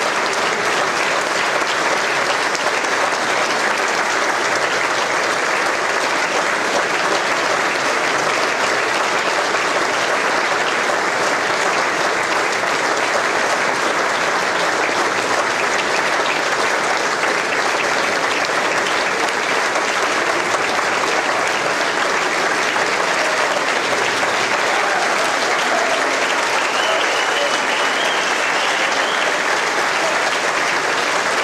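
Audience applauding, many people clapping at an even level with no let-up.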